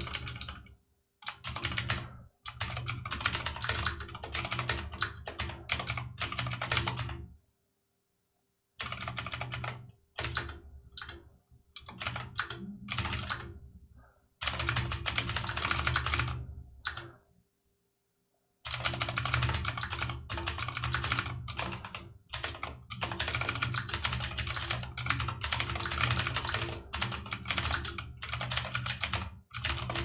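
Typing on a computer keyboard: runs of rapid key clicks in bursts, broken by a couple of pauses of about a second.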